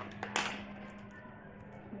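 Sealing tape being peeled and a plastic lid pulled off a takeaway food container, with one short sharp sound about half a second in and a few small plastic clicks after it. A steady low hum runs underneath.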